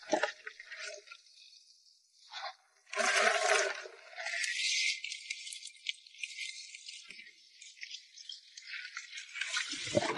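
Wet, scratchy rustling and small clicks as a rubber-gloved hand sorts a catch of live crabs, small fish and shrimp in a plastic basin, louder about three seconds in.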